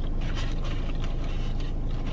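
Steady low rumble of a car cabin's background noise, with a few faint soft ticks over it.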